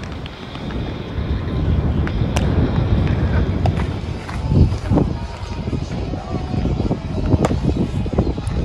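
Wind buffeting the microphone: a low rumbling noise that grows stronger about a second in and keeps surging, with a few faint sharp clicks.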